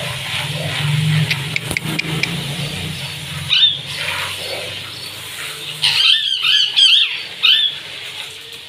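Parakeets calling: one short screech about three and a half seconds in, then a quick run of sharp, arching screeches between about six and seven and a half seconds. A low steady hum runs underneath until about six seconds in.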